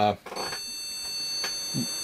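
PC motherboard beeper sounding one long, steady, high-pitched beep that starts about a third of a second in, part of a repeating series of long BIOS beeps on a Gigabyte GA-78LMT board that will not boot. It is a POST error code that the owner first read as a memory fault, but he suspects a motherboard or CPU fault because the RAM tests fine.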